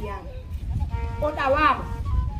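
A woman's voice in conversation over a low, steady background rumble, with one drawn-out, arching call about a second and a half in.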